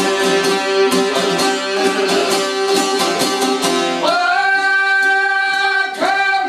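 Albanian folk music on long-necked plucked lutes (çifteli) with a violin: quick picked notes over a steady drone, then about four seconds in a man's voice comes in with one long held sung note.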